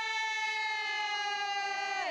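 A Miao girl singing a wine-toasting song to a guest: one long, high held note that slowly sinks in pitch.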